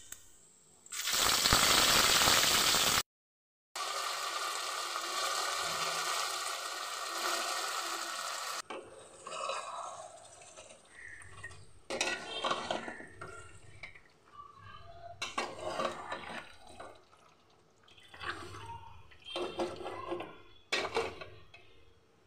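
Beef and masala paste frying in a metal pot: loud steady sizzling over the first several seconds, broken by a brief cut, then irregular strokes of a spoon stirring and scraping the pot as it sizzles.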